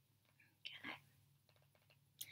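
Near silence, room tone, broken about two-thirds of a second in by a brief soft breath or whisper from a woman.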